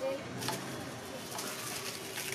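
Quiet background with faint bird calls, and a few light rustles of a paper kite with bamboo spars being handled.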